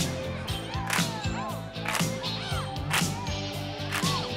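Rock band playing live: electric guitar, bass and drums with a sharp snare hit about twice a second, and a saxophone playing short notes that swoop up and back down.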